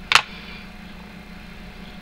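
A short burst of hiss just after the start, then a steady low hum of room background.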